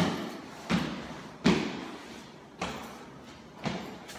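Heavy footsteps on a freshly laid ProFlex membrane over a concrete floor: five thuds about a second apart, each ringing out in a bare, empty room.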